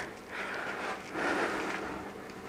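Faint rustling of a clear plastic clamshell package being handled, in two soft swishes.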